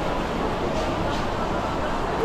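Steady city street noise: traffic running on a wet road, with indistinct voices of passers-by.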